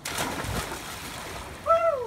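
A person plunging head-first into a backyard pool: a sudden splash, then water churning and fading over about a second and a half. Near the end a short voiced cry rises and falls in pitch.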